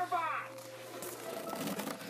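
A voice briefly, then faint clicks and rustling from handling the sewing machine's cardboard box and packing insert.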